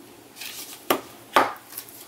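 Plastic ink pad cases handled and set down on a wooden tabletop: a brief rustle, then two sharp clacks about half a second apart.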